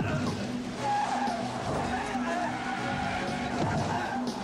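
Movie sound effects of a car driving fast, with its engine running and tyres squealing and skidding, mixed under dramatic action music.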